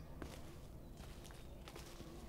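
Faint footsteps on the leaf litter and twigs of a forest floor, a few soft, irregularly spaced steps.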